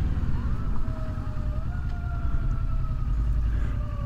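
Kawasaki Versys 650's parallel-twin engine running under a steady low rumble of engine and wind as the bike rolls through traffic. A thin whine rises about half a second in and then slowly falls.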